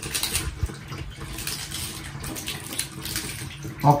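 Water running and splashing, an uneven noise that carries on throughout.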